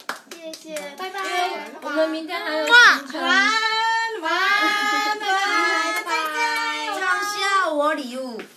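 Young women singing without accompaniment in long, held notes that glide in pitch, with quick hand claps in the first second or so.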